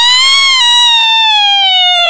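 An animated boy character's long, high-pitched wail, one held cry that rises slightly and then slowly sinks in pitch.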